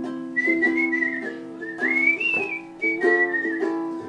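Whistled melody over chords strummed on a ukulele. The whistle comes in just after the start as one thin, wavering tone, climbs in pitch near the middle, then settles back down.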